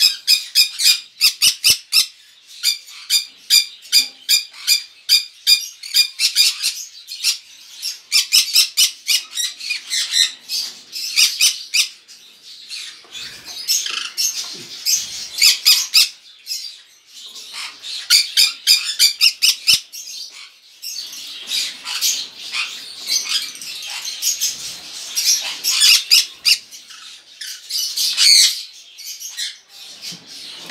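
Small parrots calling: a fast series of short, sharp, high squawks, several a second, giving way after about twelve seconds to denser, overlapping chattering.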